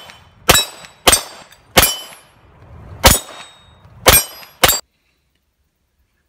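Six gunshots, each with a metallic ring, typical of pistol rounds hitting steel targets. They are unevenly spaced, about half a second to a second apart, and the sound cuts off suddenly near the end.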